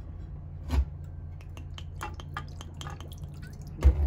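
Green tea poured from a glass bottle into a nonstick frying pan, dribbling and dripping onto the pan in a run of small ticks, with a soft knock about a second in. The liquid is added to warm grilled eel fillets in the pan.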